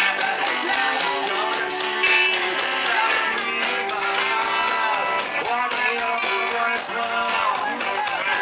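A live rock band playing, with electric guitar, bass and drums.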